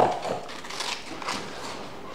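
Scissors cutting through a sheet of coloured paper: a few soft snips with the rustle of the paper being handled.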